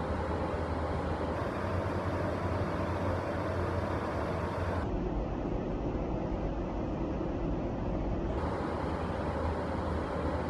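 Steady low background rumble with a faint hum, unchanging throughout and with no distinct events.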